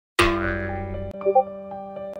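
Silence, then a sudden loud transition sound effect a moment in that rings with many tones and fades, followed about a second in by light electronic keyboard background music with short repeated notes over a held bass tone.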